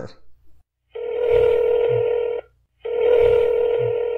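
Telephone ringback tone heard over the line as a call rings through: two steady rings, each about a second and a half long, with a short gap between them.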